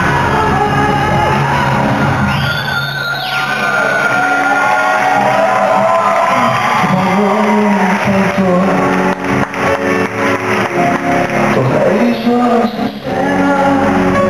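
Live pop-rock band with a male vocalist singing, recorded from the audience in a large arena hall, with a brief swooping sweep about three seconds in.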